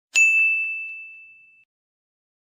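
A single bright, bell-like ding struck once, ringing out and fading over about a second and a half, with two faint softer ticks just after the strike: a logo chime sound effect.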